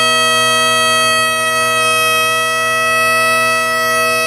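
Great Highland bagpipe, a Naill plastic set, sounding its drones under one long, steady chanter note held without change.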